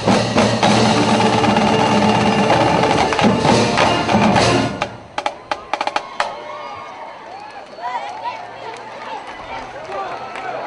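Marching band of brass and drums playing loudly, the music breaking off abruptly about halfway through. It is followed by a few sharp drum clicks and the chatter and calls of a large crowd.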